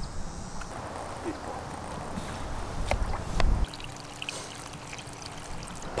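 Water pouring and trickling, with a steady low hum setting in about two thirds of the way through.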